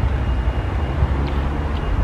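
Steady low outdoor rumble, with a couple of faint light clicks from tableware.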